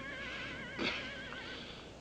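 A horse whinnying faintly in the background: one long call with a wavering pitch that fades out near the end.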